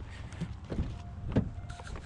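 Pickup truck's driver door being unlatched and opened: a few short clicks and knocks from the handle and latch. A faint beeping chime from the truck comes in about halfway through.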